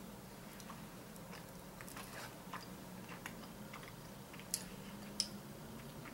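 Quiet chewing of a hazelnut-filled milk chocolate, with a scatter of small faint clicks throughout. Two sharper clicks come a little before the end.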